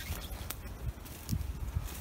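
Footsteps on a pine-forest floor of needles, dry twigs and fallen branches, with scattered crackles, clicks and a few soft thuds underfoot.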